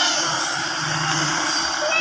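Hitachi EX100 tracked excavator's diesel engine and hydraulics running steadily as the raised bucket swings and the boom lowers.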